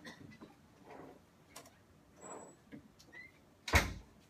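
A single sharp knock near the end, over quiet room tone with a few soft, faint noises.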